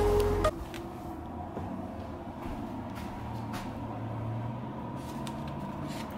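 Background music cuts off about half a second in. After that there is a steady low household hum with a few faint clicks and knocks.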